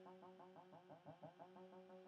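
Very faint arpeggiated synth brass, an analog-style patch playing quick repeating notes over a steady held tone.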